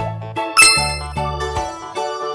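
A bright, ringing ding sound effect about half a second in, fading away over the next second, laid over upbeat keyboard background music with a regular beat.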